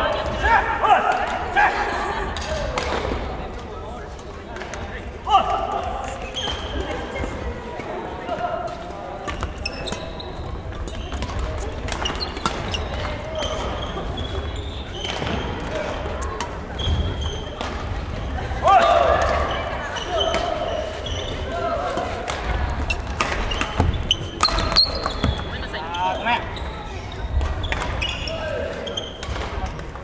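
Badminton play in a large sports hall: scattered sharp racket strikes on the shuttlecock and thuds of players' feet on the wooden court, with players' shouts and other voices echoing around the hall.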